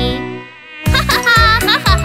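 Buzzing mosquito sound effect over a children's song backing track with a steady beat. The music drops out briefly near the start, then the buzz and the beat come back in just under a second in.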